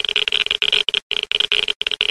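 Glitch sound effect for an animated logo: a stuttering electronic static buzz, chopped into irregular bursts several times a second.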